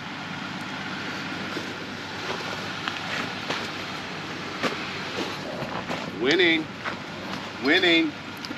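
Electric off-road winch running steadily under heavy load, pulling a stuck pickup. A voice calls out twice near the end.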